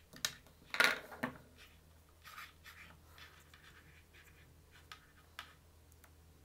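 Hands handling a stripped USB cable and its wires on a tabletop: scraping and rustling, with a sharp clatter about a second in and two small clicks near the end.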